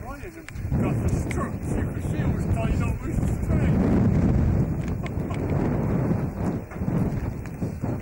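Wind buffeting a camcorder microphone, a loud uneven rumble, with indistinct voices of people standing nearby underneath it.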